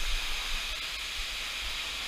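A waterfall rushing steadily into a rock pool in a narrow canyon, an even hiss with a low rumble underneath.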